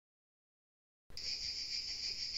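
Insects chirring in a steady, high-pitched chorus that cuts in suddenly about halfway through, out of complete silence.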